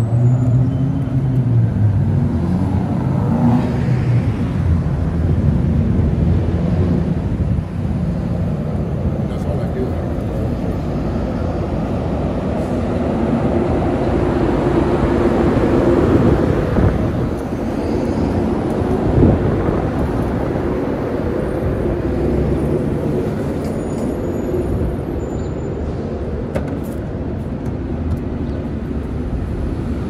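Downtown street traffic: a steady mix of cars and buses running past, with a louder stretch around the middle.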